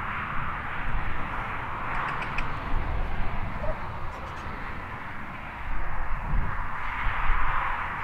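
Roadside traffic noise from a busy road, a steady wash of passing vehicles that swells louder at about six seconds in.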